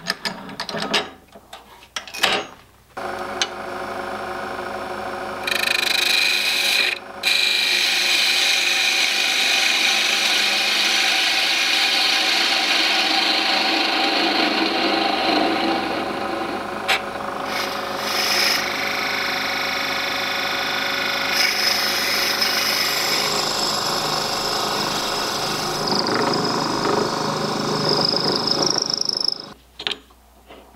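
A few clicks as the lathe's four-jaw chuck is tightened by hand. Then a JET wood lathe starts with a steady motor whine. A turning tool and a tailstock drill bit cut into the spinning black walnut blank with a loud scraping noise, until the lathe stops just before the end.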